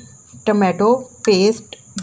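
A woman speaking Urdu in two short phrases, with a steady high-pitched tone running underneath.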